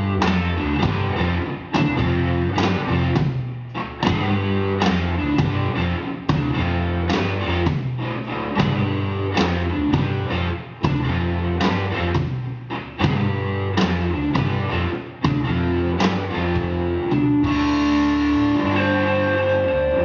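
A live rock band playing an instrumental passage: two electric guitars over bass guitar and a drum kit keeping a steady beat. Near the end a long note is held.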